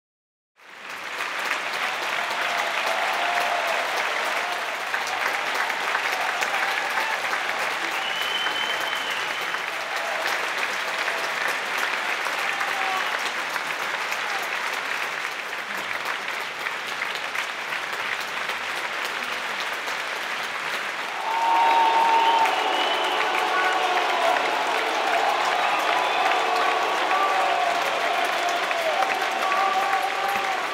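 Opera-house audience applauding at a curtain call, with voices shouting through the clapping. The applause fades in at the start and swells, with louder shouting, about two-thirds of the way through.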